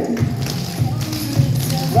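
Clogging shoe taps striking a wooden stage floor in quick rhythmic steps, a triple into a rocking chair, over pop music with a steady beat.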